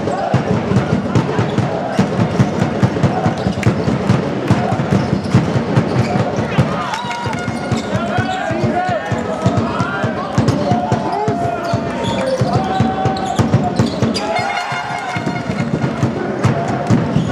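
A basketball being dribbled on a wooden gym floor in a run of quick bounces, with players and spectators calling out in the echoing hall.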